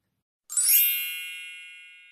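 A bright chime sound effect strikes once about half a second in, then rings out and fades away slowly.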